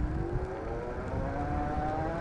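Heybike Hero's 1000 W, 48 V rear hub motor whining under full throttle as the fat-tyre e-bike accelerates from a standstill up a hill, its pitch rising steadily with speed. A low rumble runs underneath.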